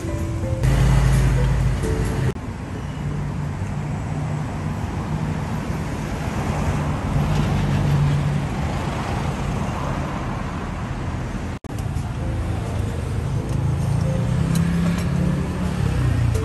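Road traffic noise from a city street, with cars passing, under soft background music.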